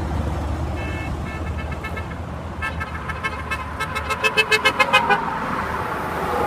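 A vehicle horn tooting in a rapid string of short beeps, faint at first and loudest about four to five seconds in, over the rumble of passing traffic.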